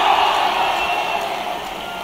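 A large crowd in a hall cheering and clapping, dying down gradually.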